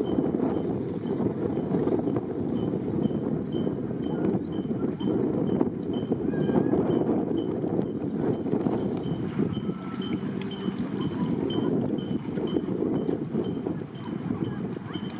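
Wind buffeting the microphone in uneven gusts, with a faint high ticking repeating about three times a second.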